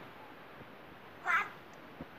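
A single short, high-pitched squeaky vocal cry about a second and a half in, over faint steady hiss.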